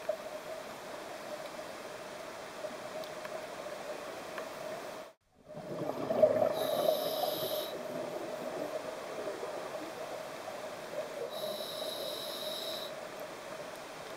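Scuba diver breathing through a regulator underwater, heard through the camera housing: a steady muffled hiss with a constant hum, and two hissing breaths about five seconds apart, near seven and twelve seconds in. The sound briefly cuts out about five seconds in, then is louder for a couple of seconds.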